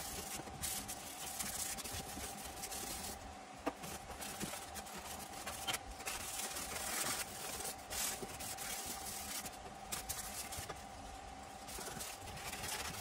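Masking tape being pulled off the roll and pressed and rubbed down onto a car's bare rear body panel, in several spells of scratchy rustling with small clicks, over a steady hum.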